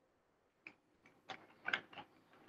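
A few sharp clicks of computer keyboard keys being pressed, unevenly spaced, the loudest about three-quarters of the way in.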